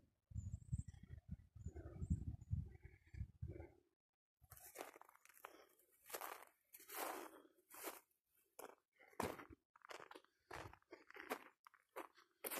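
Footsteps crunching through dry grass and brush, an uneven run of crunches from about four seconds in. Before that, a low rumbling noise on the microphone.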